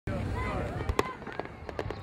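Fireworks going off: a sharp bang about a second in, followed by a few lighter pops, over faint background voices.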